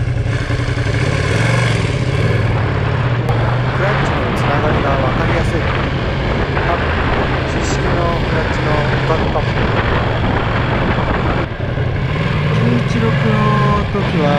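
Ducati Panigale V2's 955 cc L-twin engine running steadily at modest revs in town riding, the new engine being run in, buried under heavy wind noise on the microphone.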